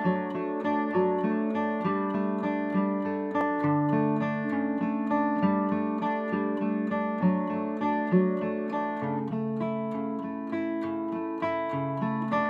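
Background music: a guitar strummed in a steady rhythm of chords, with no voice.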